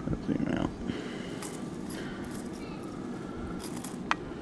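Stainless steel chainmail rings of a box-weave chain clinking and jingling softly as the chain is flexed and folded in the hand, with a few scattered light clinks, one about a second and a half in and a small cluster near the end.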